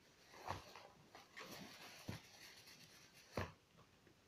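Faint handling noises of packaged items being picked up and moved: soft rustling with several light knocks and clicks, the loudest about three and a half seconds in.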